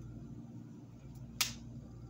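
A single sharp snap of a tarot card being handled, about one and a half seconds in, over a quiet room.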